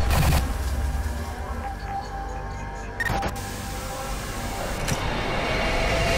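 Sound-design sting for an animated channel logo: a deep bass hit with a whoosh at the start, a sharp hit about three seconds in, and a rising whoosh swelling near the end over a low rumble.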